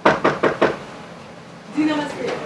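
Four quick knocks on a door, a fist rapping in fast succession within under a second.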